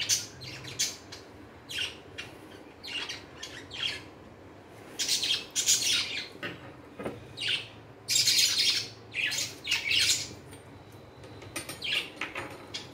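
Tailor's chalk drawn in repeated strokes across cotton fabric along a steel ruler: a scratchy rasp in several separate bursts of about half a second to a second each.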